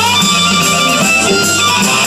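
Live electric blues band playing: electric bass, electric guitar and drums under a blues harp (harmonica) played into a hand-held microphone, its notes bending and wavering.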